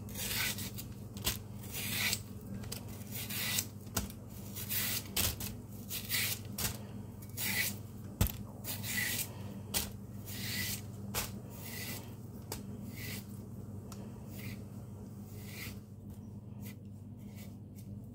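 A small kitchen knife peeling the thick green skin off a matooke (green cooking banana): a series of short rasping scrapes, about one or two a second, growing quieter over the last few seconds.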